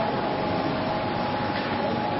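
Sheet-fed offset printing press running: a steady mechanical din with a faint, thin, steady whine over it.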